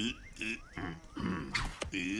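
Cartoon characters' wordless vocal noises: short pitched grunting sounds in quick succession, with a couple of brief rising whistle-like glides and a sharp click near the end.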